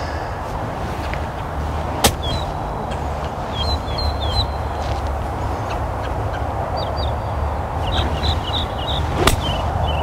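A golf iron striking the ball: one sharp click near the end, against a steady low rumble and short bird chirps. Another lighter click sounds about two seconds in.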